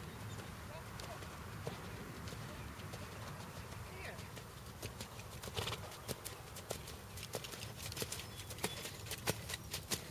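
Hoofbeats of a horse trotting in a sand arena. The sharp, irregular clicks come more often and louder in the second half as the horse passes close by.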